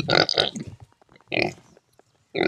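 Heavily pregnant sow grunting twice: a longer grunt at the start and a short one about a second and a half in.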